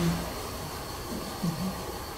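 A woman's drawn-out 'um' trails off at the start, then a pause with room hiss and a few faint low voice murmurs about halfway through, over a thin steady high-pitched whine.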